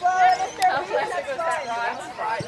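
People chatting close to the microphone, with voices overlapping.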